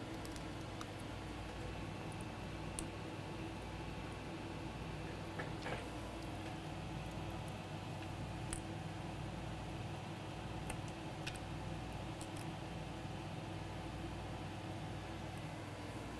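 Steady electrical hum with a few faint, light clicks scattered through it: small tools and phone parts being handled at a repair bench.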